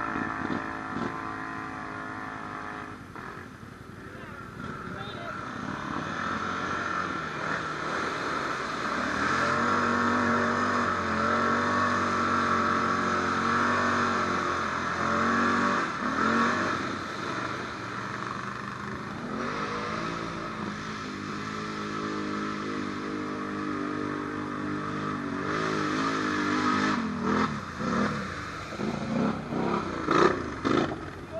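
Can-Am ATV engine running and revving as it rides, its pitch rising and falling repeatedly, louder and higher from about nine seconds in.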